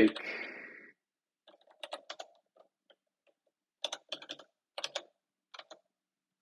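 Computer keyboard keystrokes in short bursts of a few keys with pauses between, one group about two seconds in and several more from about four seconds on.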